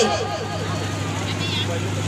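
A woman's amplified singing voice ends a phrase with a falling glide at the start. A pause follows, with faint voices over a steady low electrical hum from the microphone and PA system.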